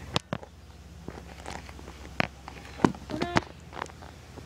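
Close handling noise from the phone camera being set down and adjusted on the ground: a handful of separate sharp knocks and taps right at the microphone.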